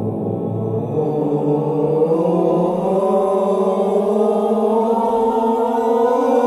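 A group of adult voices sustaining a vowel together as a vocal warm-up exercise. The pitch steps up to a higher note about a second in and again about three seconds in.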